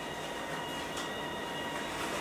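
Steady background hiss with a faint, thin, steady whine. No distinct event.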